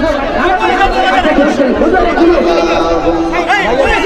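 Several men shouting and talking over one another in a heated argument, loud and overlapping, with crowd chatter behind. A steady held tone sounds for about a second in the middle.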